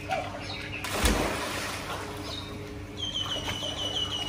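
A child jumping into a swimming pool: one loud splash about a second in. From about three seconds in, a bird sings a fast, even trill of high chirps.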